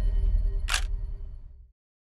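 Trailer sound effect: a deep low rumble with one sharp click-like hit about 0.7 s in, fading away and cutting to silence shortly before the end.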